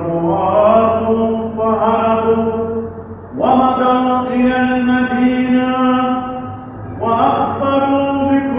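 Solo male voice chanting the Gospel in Arabic in Byzantine eighth tone, drawing out long melismatic held notes. There are three sustained phrases, split by short breaths about three and seven seconds in, each pitched a little higher than the last.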